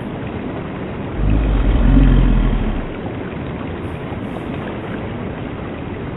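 Film soundtrack effects: a steady rushing noise with a deep rumble that swells about a second in and fades again before the three-second mark.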